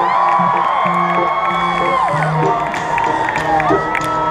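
A live rock band playing through a festival sound system, heard from within the crowd, with the audience cheering and whooping over it. Low notes step from one pitch to the next as the lead-in to the next song starts.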